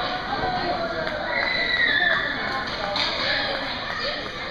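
Children's voices calling and chattering in an indoor ice rink, with a high call sliding down in pitch near the middle.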